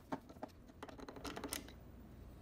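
A T15 screwdriver backing a screw out of the plastic housing of a Jura espresso machine: a string of light, irregular clicks, bunched more closely in the second half.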